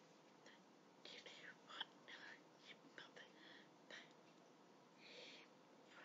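Near silence, with faint breathy whispering in short bits through the middle.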